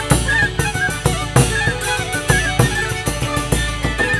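Traditional Hutsul folk band playing a fast hutsulka dance tune. Fiddle and wooden flute carry the melody over a hammered dulcimer (tsymbaly), while a bass drum with a cymbal mounted on top beats a steady dance rhythm.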